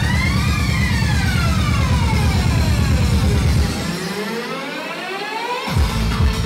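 Electronic dance music from a club DJ set: a siren-like synth line swoops up and down in pitch over a fast, heavy bass pulse. About four seconds in the bass drops out while a rising sweep builds, and the full beat crashes back in near the end.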